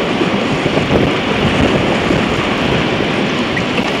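Rushing whitewater of a shallow, rocky Class II rapid churning around an inflatable raft, a steady noise, with wind buffeting the microphone.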